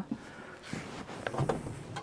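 Faint background hubbub of a busy hall, with a few brief, distant voices about halfway through; no distinct sound event.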